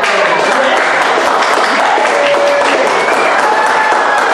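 Live audience applauding, with a few voices calling out over the clapping, in response to the reveal of the chosen card.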